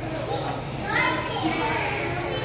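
Children's voices chattering and exclaiming, high-pitched and rising about a second in, among other people talking.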